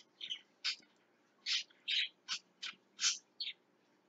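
A bird chirping: about nine short, separate calls, spread through a pause in speech.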